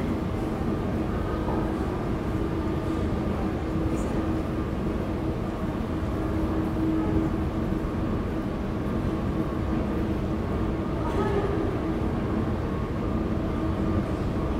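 Steady city background noise: a low rumble with a constant droning hum and no sharp events.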